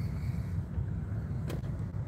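Low, steady rumble of a car heard from inside its cabin as it rolls slowly along, with a single small click about one and a half seconds in.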